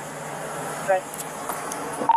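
Steady rushing noise on a police body camera's microphone as the wearer moves outdoors, with a low steady hum underneath and one short spoken word about a second in.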